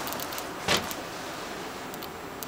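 A single brief thump about two thirds of a second in, over a low steady hiss.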